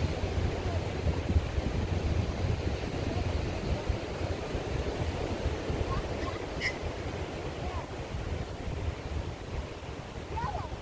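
Wind buffeting the microphone in gusts over the steady wash of surf, with one short high chirp about two-thirds of the way through.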